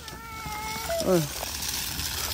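A high-pitched voice holds one steady note for most of a second, then gives a short call that falls in pitch.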